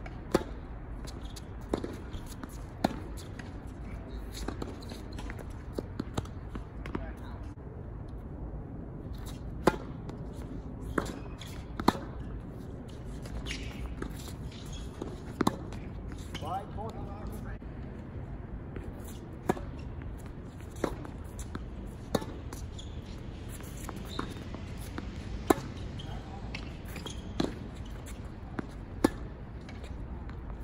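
Tennis ball struck by rackets and bouncing on a hard court: sharp pops come every one to few seconds, the first a serve about half a second in.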